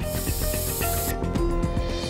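Stovetop pressure cooker hissing as steam escapes from its weight valve for about a second, the sign it has come up to pressure, over background music with held notes.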